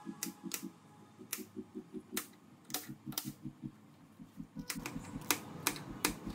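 Kitchen knife chopping green bell pepper on a plastic cutting board: a run of sharp, irregularly spaced taps, about nine strikes, as the blade hits the board.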